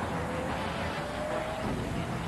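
Television title-sequence sound effect: a loud, dense noise with a faint tone rising slowly in pitch across it.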